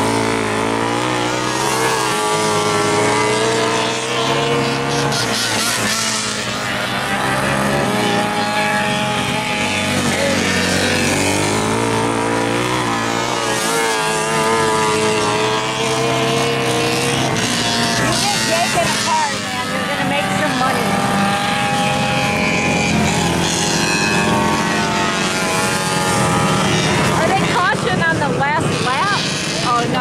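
Racing go-karts' small engines running around a dirt oval. Their engine notes rise and fall in pitch as they accelerate out of the turns and pass by.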